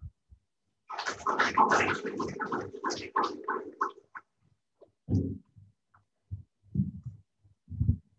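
Muffled rustling and clatter at the podium for about three seconds, then a few scattered low thumps, as the speaker leaves the microphones and the next person steps up.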